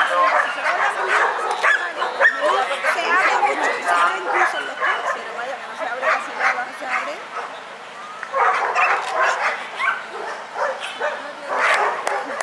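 A dog barking over and over in short, high yips.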